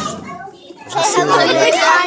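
Children chattering and playing in a large hall, several voices overlapping. It is quieter for the first second, then children's voices pick up.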